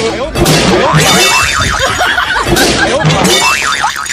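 A dubbed comedy sound effect of cartoon-style laughter with boing-like wobbling sounds, looping about every two seconds; each round opens with a sudden hit.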